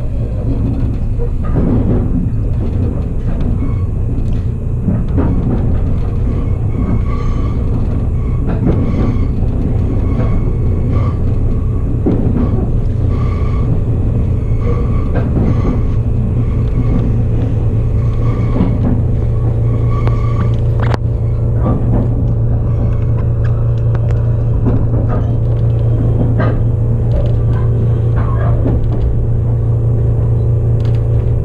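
Steady low rumble of a train running, heard from inside the carriage, with music playing over it.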